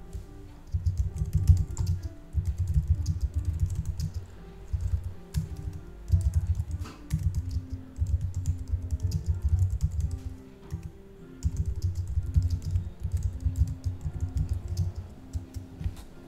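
Typing on a computer keyboard in runs of rapid keystrokes separated by short pauses, with faint music in the background.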